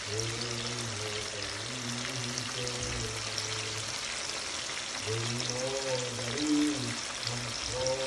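Cubes of lamb frying in deep canola oil in a pan: a steady sizzle with fine crackles. Over it, music with a voice singing drawn-out 'oh' notes, which drops out for a second or two around the middle.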